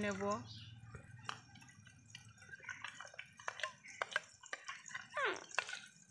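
Water trickling from a metal pot into a steel bowl of ground mustard paste, then a spoon stirring the thinned paste, with scattered light clinks and taps of the spoon against the steel bowl.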